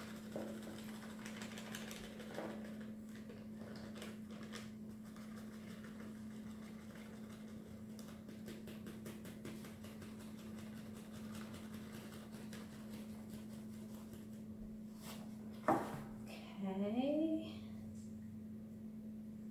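Cake flour poured from a cardboard box into a plastic measuring cup, soft and faint with scattered small ticks, over a steady low hum. Near the end comes a single knock, as the box is set down on the table, then a brief hum from a voice.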